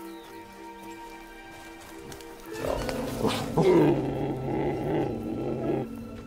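Background music with sustained notes. About two and a half seconds in, a young wild animal gives a loud, low growling call lasting about three seconds.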